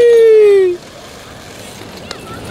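A person's loud, drawn-out yell that slides down in pitch and cuts off sharply about three-quarters of a second in.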